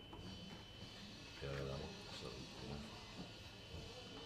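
Quiet room tone with a short spoken question about a second and a half in and faint murmuring voices around it.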